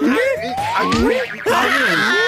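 Cartoon sound effects: a long whistle-like glide rising steadily in pitch, then a low thud about a second in and a burst of noise half a second later, as the cursed dancing shoes send Motu leaping into a kick.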